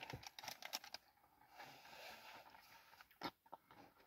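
Near silence, with faint small clicking mouth sounds from chewing a caramel-and-nut chocolate bar during the first second and one more faint click about three seconds in.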